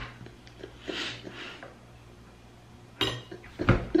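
A fork clinking and scraping on a plate, mostly soft, with a sharper clatter about three seconds in.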